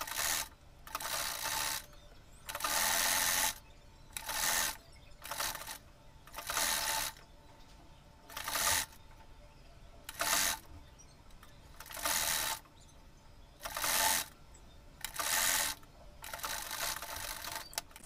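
Electric sewing machine stitching a curved seam around two layered fabric circles. It runs in about a dozen short bursts of a second or less, with pauses between them.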